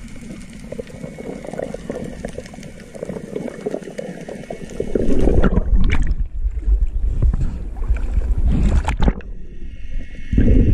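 Water noise picked up by a camera at a diver's surface: muffled underwater sloshing at first. About five seconds in the camera breaks the surface and loud splashing and rumbling water noise take over, then it dips back under near the end.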